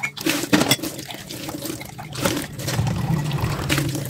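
Glass mugs being hand-washed in a sink of soapy water: water splashing and pouring, with several sharp clinks of glass against glass.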